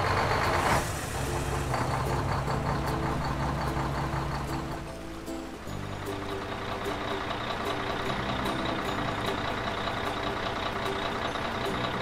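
Cartoon engine sound effect for a road roller, a steady low running hum over light background music. The hum fades out about five seconds in, and a similar engine sound picks up again a second later.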